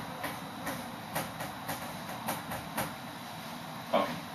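Marker writing on a whiteboard: a run of short scratchy strokes, a few a second, with a louder knock near the end.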